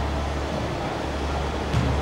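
Steady low hum and hiss of a large indoor sports hall's background noise, with a soft thump near the end.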